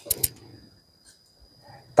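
Handling noise from a fingertip touching a clip-on wireless lavalier microphone: a few sharp clicks and a brief rustle in the first half second, then quiet. A faint, steady high-pitched whine runs underneath.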